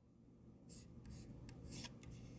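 Near silence: room tone with a few faint, brief rustling noises around the middle.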